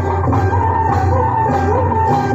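Bodo folk music for the Bagurumba dance: a high melody wavering and turning in quick ornaments over a steady drum beat.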